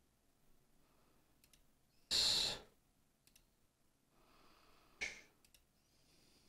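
A few faint computer mouse clicks spaced a second or two apart. About two seconds in there is a louder short breathy hiss close to the microphone, and a shorter one near five seconds.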